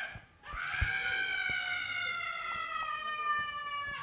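A woman's long, high-pitched wail or scream, held for about three and a half seconds and sliding slowly down in pitch, with a few faint knocks underneath.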